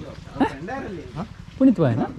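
Men's voices talking, with two loud short calls, one about half a second in and one near the end.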